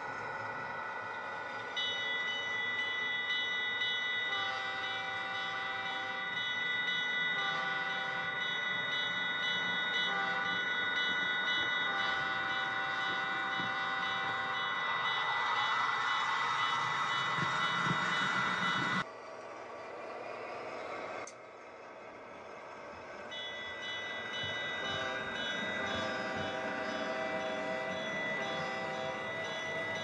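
App-generated diesel locomotive sound for a Bachmann EZ App HO locomotive: a steady engine sound with the horn blown long, long, short, long, the grade-crossing signal. After a break near the middle the engine sound and horn blasts resume.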